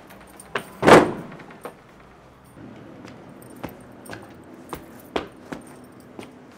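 A door thuds once about a second in, the loudest sound, followed by a string of light footsteps and small clicks on a wooden parquet floor.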